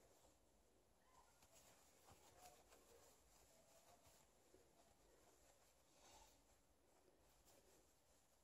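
Near silence, with faint rustles and a few soft clicks as a sheer chiffon scarf is handled and turned over.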